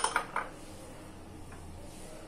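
Three light clinks in the first half second, from small glass bowls and spices knocking against a steel mixer-grinder jar and the countertop, then quiet room tone with a faint low hum.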